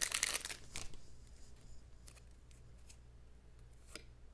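Foil wrapper of a Topps baseball card pack being torn open and crinkled, a dense crackling rush in the first second or so. Then only a few faint ticks as the cards are handled.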